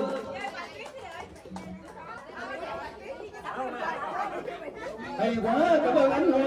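Several people talking at once, party chatter, with the music having just broken off. A louder voice comes in about five seconds in.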